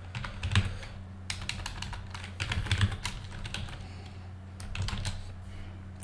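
Computer keyboard typing: irregular runs of keystroke clicks with short pauses between them, over a low steady electrical hum.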